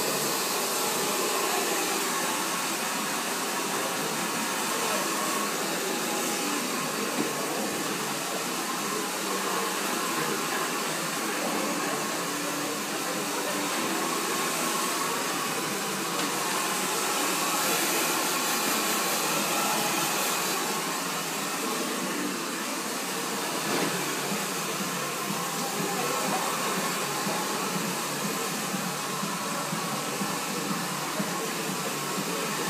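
Handheld hair dryer blowing steadily while short hair is blow-dried.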